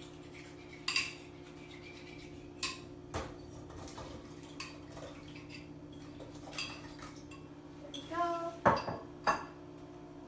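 A whisk clinking and scraping against a stainless steel saucepan as a thickening caramel and cornstarch mixture is stirred, to lift cornstarch settled on the bottom of the pan. Sharp clinks come every second or so, with a quicker, louder cluster near the end, over a steady low hum.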